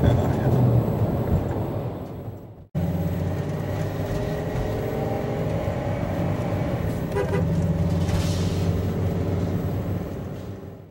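Road and engine noise heard from inside a moving vehicle's cab. The sound fades out and cuts off abruptly about two and a half seconds in, then steady driving noise picks up again.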